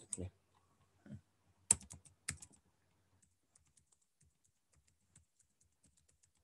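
Computer keyboard being typed on: a few louder clicks in the first two and a half seconds, then a run of light keystrokes, several a second.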